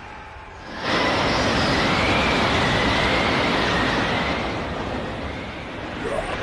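Anime sound effect for a burst of Conqueror's Haki: after a short hush, a loud sustained rushing roar sets in about a second in, with a thin wavering whine over it, easing slightly toward the end.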